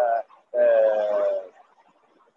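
A man's voice: a short syllable, then a long, held 'ehh' hesitation about half a second in, gently falling in pitch, that lasts about a second.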